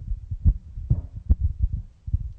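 Handling noise from a handheld microphone being held and moved: irregular low thumps and rubs, several a second.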